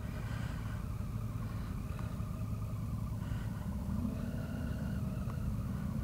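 A motorcycle's three-cylinder engine, a 2015 Triumph Tiger 800, idling steadily while the bike stands still, heard from the rider's helmet camera.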